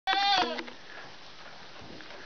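A buckling (young billy goat) gives one short, high bleat of about half a second, falling slightly in pitch, right at the start.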